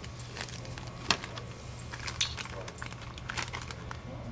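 Plastic-bagged parts crinkling and rustling as they are handled in a cardboard shipping box, with a few sharp clicks. The loudest click comes about a second in.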